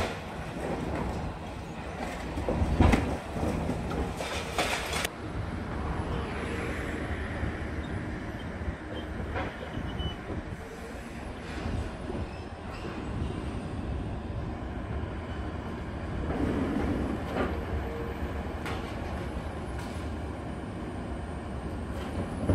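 Long-reach demolition excavator working on a concrete building: the machine's engine runs steadily under irregular crunching and clattering of breaking concrete and debris, with the loudest crash about three seconds in.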